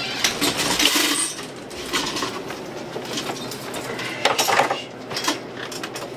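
Irregular knocks and clinks of a metal-framed bar stool being moved on a tile floor and sat on, then scattered clicks from hands at a gaming machine. The loudest group of knocks comes about four seconds in.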